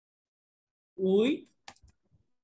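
A short, quick run of computer keyboard keystrokes near the end, typing a few letters right after a spoken word. The first second is near silence.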